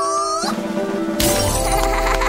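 Background music of a children's cartoon with a crash sound effect about a second in, followed by a lingering low rumble.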